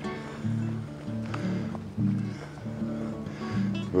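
Background acoustic guitar music: a slow run of low notes, changing about once a second.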